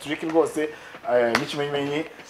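A man's voice through a handheld microphone, drawn out and held on a steady pitch in the second half, with one short click partway through.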